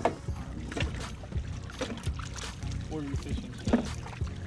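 Water sloshing in a boat's livewell as a small dip net is swept through it to catch a live baitfish, with a few light knocks of the net against the well. A steady low hum runs underneath.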